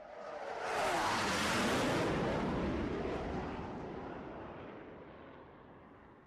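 Airplane flyby sound effect used as a segment transition: a rush of noise swells up over the first second or two with a pitch falling beneath it, then slowly fades away.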